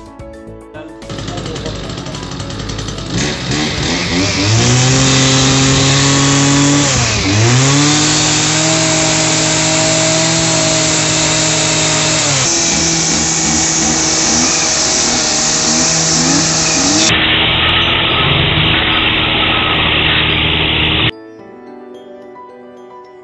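Cub Cadet 735/745 brushcutter engine revving up to full throttle, dipping briefly about seven seconds in and then holding a steady high speed. With its carbon-choked spark arrestor cleaned, the engine now takes load at full throttle. It cuts off abruptly near the end, with light background music before and after it.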